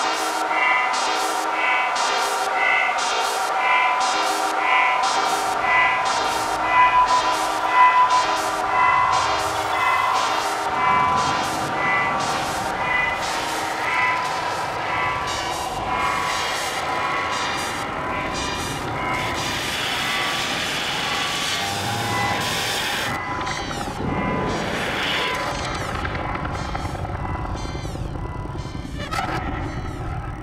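Glitch and noise electronic music played live on synthesizers: a regular pulse of short repeated notes over steady drone tones, joined partway through by a deep noisy rumble, with the pulse fading out in the second half and leaving a noisier texture.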